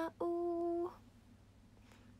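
A young woman singing a cappella: a short sung word, then one held note that stops under a second in. Quiet room tone follows.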